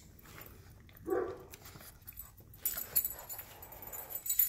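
A French bulldog at its food bowl, with scattered short clicks and one brief vocal sound about a second in; near the end its metal collar tag jingles as it moves off across the floor.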